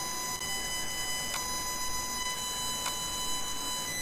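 Steady high-pitched electrical whine with hiss in the recording, made of several even tones. Two faint computer-mouse clicks come about a second and a half in and near three seconds.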